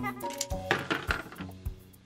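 Light plastic clicks and clinks as a toy key turns in the lock of a small plastic garage door and the door is swung open, the keys on their ring knocking together, over soft background music.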